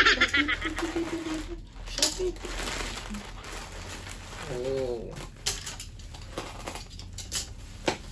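Plastic courier mailer being cut and torn open by hand, its contents pulled out: crinkling plastic with scattered sharp clicks.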